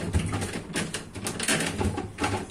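Refrigerator shelf being forced into a higher slot inside a Brastemp BRM44 refrigerator: a run of clicks, knocks and low thuds as the tight-fitting shelf is pushed into place.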